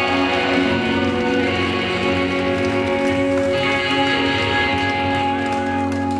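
Live rock band's electric guitars holding a sustained, ringing chord, which shifts to a new chord about three and a half seconds in.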